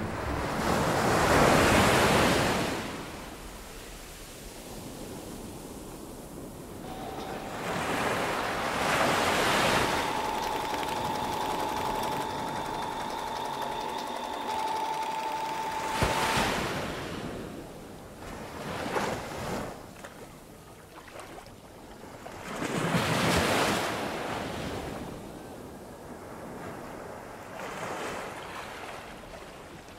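Rushing surf noise of waves breaking and washing back, swelling and ebbing four times. Through the middle a thin steady high tone is held; it steps up slightly in pitch and then cuts off with a click.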